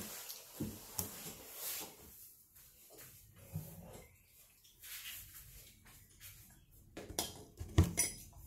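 Faint clicks and knocks from someone moving about in a small room, with a louder knock shortly before the end.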